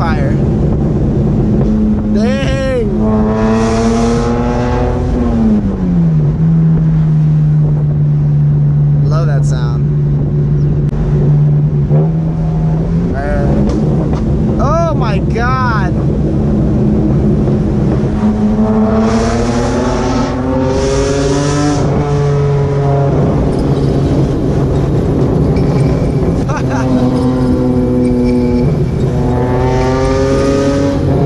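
BMW E46 M3's S54 straight-six heard from inside the cabin while driving: a steady engine note that drops in pitch about six seconds in, then climbs under acceleration twice in the second half. Short high-pitched vocal sounds come through a few times in the first half.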